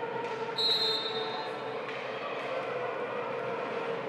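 A referee's whistle blows once, a shrill steady blast of about a second starting about half a second in, signalling the serve. Underneath is the steady background noise of the sports hall.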